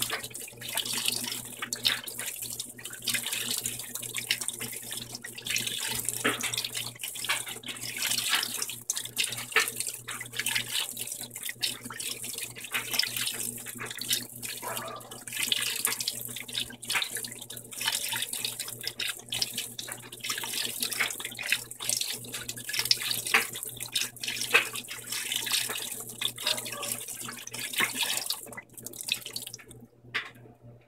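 Whirlpool Vantage top-load washer filling: several streams of water pour from under the tub rim and splash onto a large load of wet towels. The steady rushing and splashing stops suddenly near the end, leaving a low steady hum.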